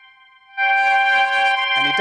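Chord of steady synthetic tones from a camera-to-sound device that translates the light along a line of 32 blocks into sound. The tones fade out, then a louder, fuller chord comes in about half a second in.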